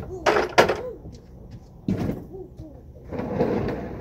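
Hollow knocks of plastic play furniture being moved, two sharp ones about a quarter-second apart just after the start, then a scraping drag near the end. A small child's short voice sounds come in between.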